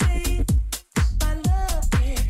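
House-style dance music from a DJ mix, a four-on-the-floor kick drum at about two beats a second under pitched synth or vocal lines and hi-hats. The track cuts out briefly a little before halfway, then the beat comes back in.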